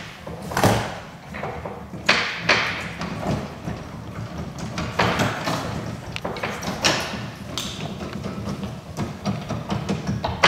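A neglected old upright piano with worn, dusty keys being played: chords and notes struck at an uneven pace, each ringing out and fading.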